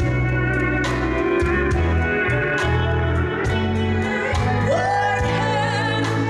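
A live country band playing a slow ballad, with pedal steel guitar, electric guitars, bass and drums keeping a slow beat. A woman's voice comes in near the end on a held, wavering note.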